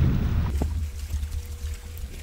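Low, steady wind rumble on the microphone, with a single knock about half a second in.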